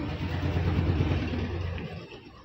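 An engine running, swelling to its loudest about a second in and then fading, like a motor vehicle passing by.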